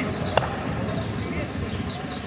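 One sharp knock of a cricket ball bouncing on the asphalt road, about a third of a second in, over a background of voices.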